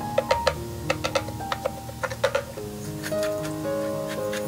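Background music with sustained notes, over a scatter of irregular clicks and taps from a wooden spatula stirring cauliflower rice in a frying pan.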